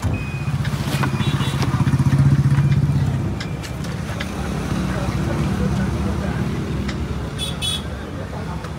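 A vehicle engine running steadily, swelling louder about two seconds in, with a few light knocks over it.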